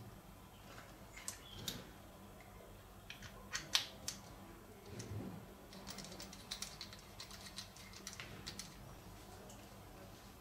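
Small clicks and taps of a fiber-optic patch cord connector being handled and fitted into the port of a handheld optical power meter, scattered through, the sharpest near four seconds in.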